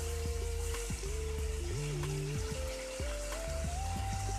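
Potatoes frying in oil in a kadhai, sizzling steadily just after a little water is added. Background music with slow held notes plays over it.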